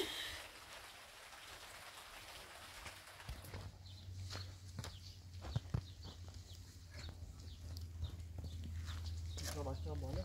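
Faint scuffs, footfalls and knocks of a person scrambling up a concrete wall, over a steady low hum. A brief voice-like sound comes near the end.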